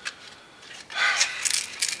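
An 80-grit sanding disc being handled and folded by hand: a few short papery crinkles and rustles in the second half.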